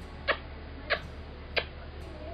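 Three short smacking kisses of the lips, blown one after another about two-thirds of a second apart.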